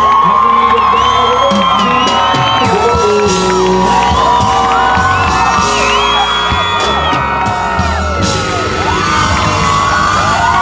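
Live concert music from a band and DJ over a PA system, loud and steady with a bass beat, while the crowd cheers and whoops throughout.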